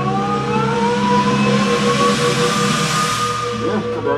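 Drum corps brass section holding a loud sustained chord, with one line gliding upward in pitch, over a swelling rush of noise that peaks about halfway through; the low notes shift near the end.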